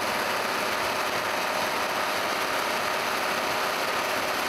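Tractor pulling a rotary tiller through a field, giving a steady, even mechanical whirr and clatter.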